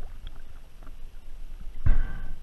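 Water sloshing and lapping around a camera held at the water surface, with small ticks. A loud splash near the end comes as the camera comes up out of the water.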